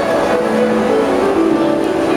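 Two harps playing, a slow line of plucked notes that ring on in the middle register.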